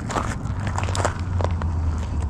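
Baitcasting reel cranked slowly on a very slow lure retrieve, giving soft irregular clicks over a steady low hum.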